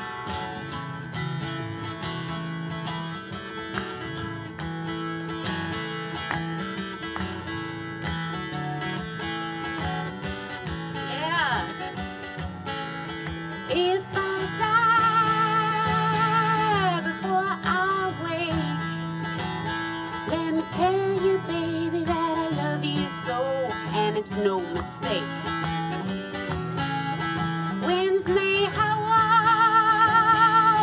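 A capoed acoustic guitar played as a song's intro, with a woman's voice singing over it in phrases from about halfway through.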